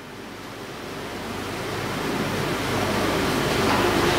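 Steady hiss of background noise with no distinct event, growing steadily louder.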